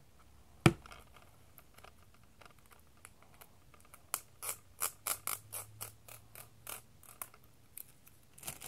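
Fingernails picking and scratching at the plastic wrapping and seal of a DVD case: a single sharp click under a second in, then, from about halfway, a run of small clicks and scratches, two or three a second.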